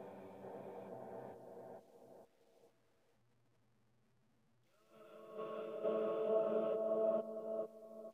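A speaking voice run through a reversed 'ghost' reverb chain (convolution reverb plus a delay in rewind mode). It comes out as smeared washes of held tones with no clear words. The first wash fades out about two seconds in; a second, louder one swells up about five seconds in and cuts off near the end.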